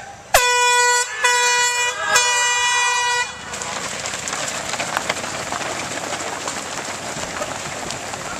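Air horn sounding the start of a 5K road race: three loud, steady blasts run almost together over about three seconds. After it stops, the shuffling patter of a large field of runners' shoes on the road takes over, mixed with crowd noise.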